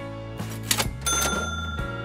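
Background music, with a bright ringing ding sound effect about a second in that sets off with a short noisy burst and rings on for most of a second, marking a time-skip transition.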